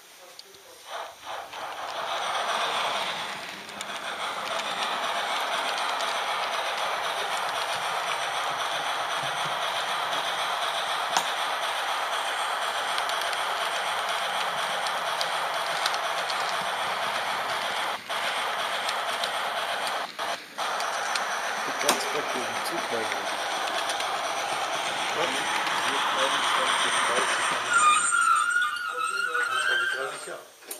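H0-scale model train running along the track, heard from a camera riding on it: a steady rattle and hum of small metal wheels on the rails and the drive. It starts about a second in, has a couple of short dropouts in the middle, and ends with a brief wavering whine as the train comes to a stop near the end.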